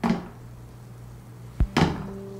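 A metal tool knocks against the side of a full plastic Mighty Mug tumbler with a suction base: two sharp knocks in quick succession about one and a half seconds in, and the cup does not topple.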